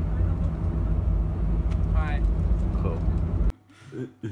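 Steady low rumble of a coach's engine and road noise heard from inside the passenger cabin. It cuts off abruptly near the end.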